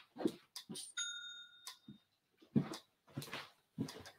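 Footsteps and light knocks of someone moving about and handling objects, with a single clear ringing ding about a second in that dies away within a second.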